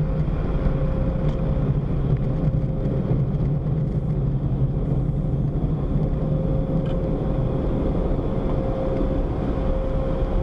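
Steady low rumble of a car's engine at idle, heard from inside the cabin as the car creeps forward, with a thin steady hum running through it.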